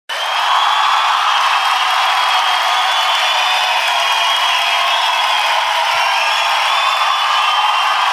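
Studio audience applauding and cheering steadily as a comedian walks on stage; it starts abruptly and keeps a constant level.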